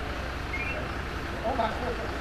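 Steady low rumble of an idling fire engine running on scene.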